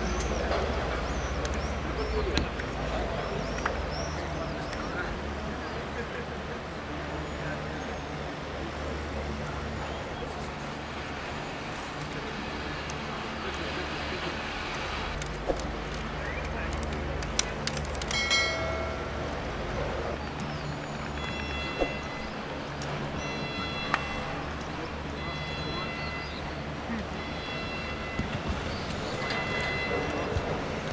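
Open-air ambience on a sports pitch: indistinct voices of a group of players talking, over a steady low rumble. In the second half a few short, high-pitched tones repeat.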